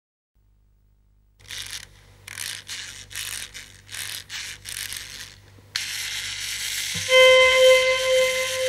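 A clockwork key on a small wooden box being wound by hand: a run of short ratcheting clicks, about two a second. The winding stops with a sudden hiss, and near the end a held, whistle-like musical note with overtones starts and changes pitch.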